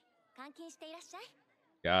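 Speech only: a quiet, high-pitched young woman's voice from the anime's dialogue, then a louder man's voice begins near the end.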